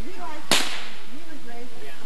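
A single firecracker going off: one sharp bang about half a second in that dies away quickly, with voices in the background.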